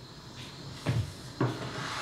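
Two short knocks about half a second apart as the cast-iron Axminster Rider No. 62 low angle jack plane is handled during blade adjustment.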